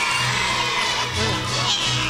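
Live band music with held low notes, mixed with the noise of an audience of children.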